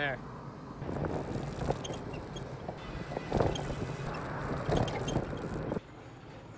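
A bicycle's loose pannier rack, missing its bolt, rattling and knocking irregularly while riding, over steady wind and tyre noise.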